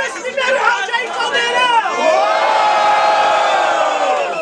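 Battle crowd shouting and chattering over one another, then, about halfway through, a long drawn-out shout held at one pitch, sagging a little.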